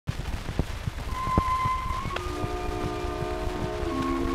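Crackle, clicks and rumble of an acoustic-era shellac 78 rpm record, then the orchestral accompaniment begins: a single held high note about a second in, joined by sustained chords about a second later.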